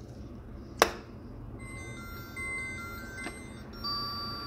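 A sharp click a little under a second in, then the DL YC-230 flip phone's small speaker plays a short electronic melody of high beeping notes at changing pitches.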